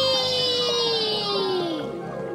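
A cartoon child's voice holding one long, drawn-out cry as the divers descend, its pitch slowly falling and fading away near the end.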